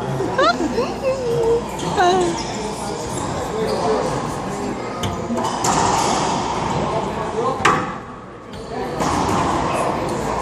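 Racquetball rally in an enclosed court: the hard rubber ball smacks off racquets, walls and the wooden floor, ringing with the court's echo. Two sharp hits stand out, about halfway and later in the rally, over background voices.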